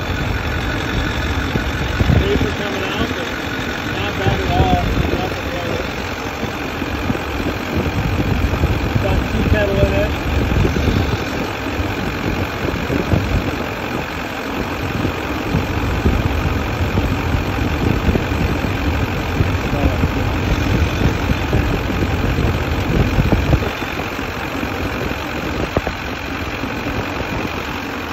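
2003 Duramax LB7 6.6-litre V8 turbodiesel idling steadily at operating temperature, its oil filler open for a crankcase blow-by check.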